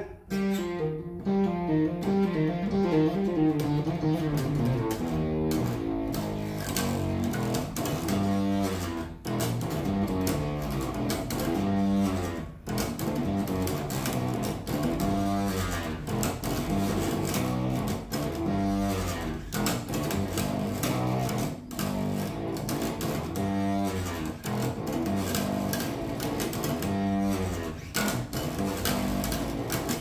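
Golden four-string electric bass with EMG active pickups, both pickups on, played through an amplifier: a continuous riff of plucked notes. The tone is distorted, which the player puts down to the weak battery powering the EMG pickups.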